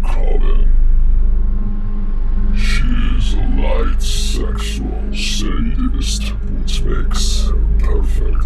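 A voice speaking over ambient background music with a steady low drone. The voice is quieter for about the first two seconds, then carries on with strong hissing 's' sounds.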